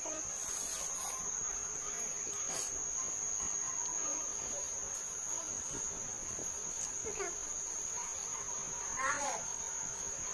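A steady high-pitched cricket trill runs throughout, with a few faint clicks and two brief, faint distant voices in the second half.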